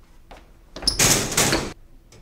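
A person shoved into metal hallway lockers: a loud crash starting just under a second in and lasting about a second.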